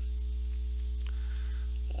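Steady electrical mains hum with a ladder of higher overtones, picked up in the recording chain during a pause in the talk. A faint click comes about a second in.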